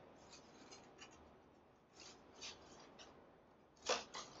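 Faint, scattered rustling and crinkling from looped leaf blades and silver decorative material being handled and adjusted in a vase, with a sharper, louder crackle near the end.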